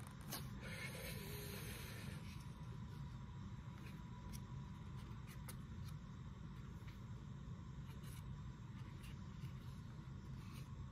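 Quiet handling of a small plastic fruit cup: a foil lid peeled back with a faint rustle in the first couple of seconds, then a few soft clicks and taps of a spoon against the cup. Under it a steady low room hum.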